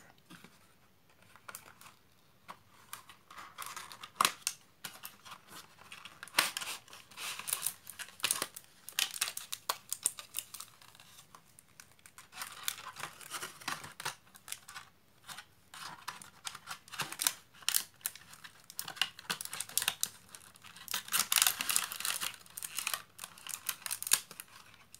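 Cardboard and paper packaging being handled: irregular rustling, crinkling and small taps, busiest around six to ten seconds in and again near the end.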